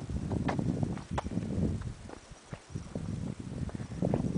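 Wind buffeting the microphone in gusts, a low rumble that swells and fades, with a few sharp clicks in the first second or so.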